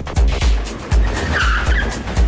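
Film score with a steady deep beat, and a car's tyres screeching briefly in the second half.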